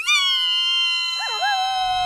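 Two high voices holding one long shriek together, the second joining about a second in with a quick wobble before settling on a lower held note; an excited scream of delight between two animated characters.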